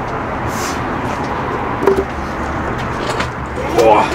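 Steady outdoor urban background noise with a low rumble, like nearby road traffic, with a brief voice about halfway through and a man saying 'ooh' at the end.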